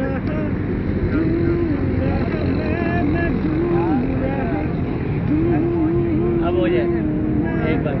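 People's voices talking and humming, with drawn-out pitched notes, over a steady low rumble.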